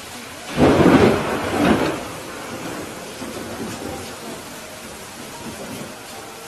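Rain falling steadily, with a loud clap of thunder about half a second in that rolls in two surges and dies away over a couple of seconds.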